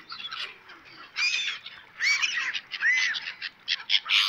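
Gulls calling in short, high, harsh bursts, about a second in, around two seconds in and again near three seconds, one call rising and falling in pitch.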